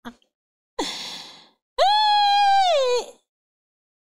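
A woman laughing hard: a breathy gasp about a second in, then a long high-pitched squeal held for about a second that drops in pitch as it ends.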